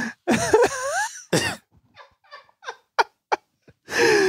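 Men laughing hard into a microphone, a loud outburst with pitch swoops in the first second and another short one, then coughing and gasping breaths.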